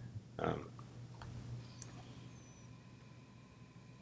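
A few faint clicks from a laptop mouse or trackpad as a video player is started and paused, over a steady low electrical hum. A brief vocal sound comes about half a second in.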